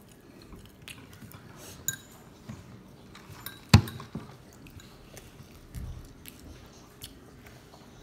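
Close-up eating sounds: a person chewing grilled steak, with scattered small clicks of plastic cutlery against a plate and one sharp click about halfway through.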